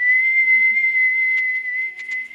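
A person whistling one long, steady, high note that slides up slightly as it starts.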